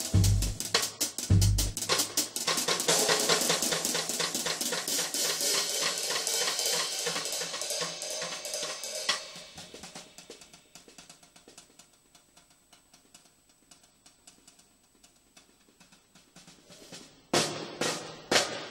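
Drum kit played with sticks: bass drum kicks and snare hits, then a fast, busy run of strokes with cymbal wash that dies away to very soft taps and near silence for several seconds, before loud hits come back near the end.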